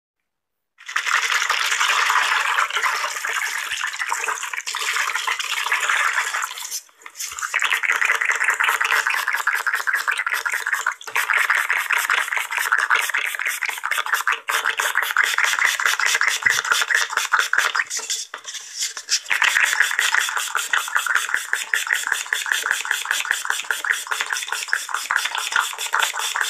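Trigger spray bottle sprayed in very fast repeated pumps, making a rapid, almost unbroken train of hissing sprays with a few short pauses, recorded close on an earphone microphone.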